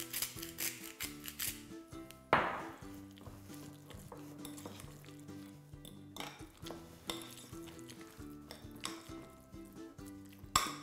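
A hand salt grinder clicking as it grinds over a bowl, a loud sharp knock about two seconds in, then a metal spoon stirring and scraping mashed avocado in a glass bowl, over soft background music.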